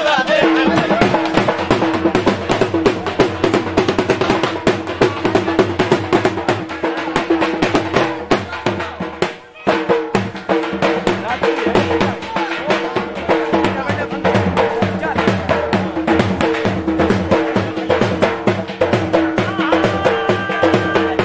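Dhol drum beaten in a fast, dense rhythm for jhumar dancing, with steady held notes running beneath it. The drumming drops out briefly about nine and a half seconds in.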